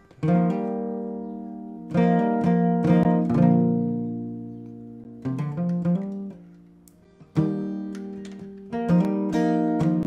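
Solo acoustic guitar: chords struck with a pick and left to ring out, a new chord every one to two seconds.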